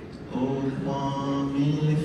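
A man singing unaccompanied in Yoruba: a slow melody of long held notes, starting a moment in after a brief pause.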